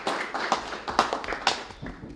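A small group of people clapping in scattered, uneven applause that thins out and fades toward the end.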